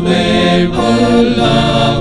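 A small men's church choir singing a chant-like liturgical setting, holding long notes and moving between them.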